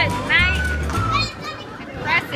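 Music with a steady low bass and high swooping vocal sounds, mixed with children's excited voices.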